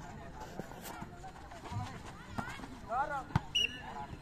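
A volleyball rally: hands slapping the ball a few times, the sharpest hit about three seconds in, with short shouts from the players.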